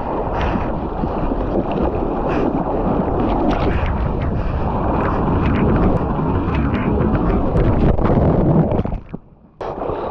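Shorebreak wave breaking over a GoPro-carrying bodyboarder: loud rushing, churning whitewater with wind buffeting the camera microphone. Near the end the sound drops away sharply for about half a second, then returns.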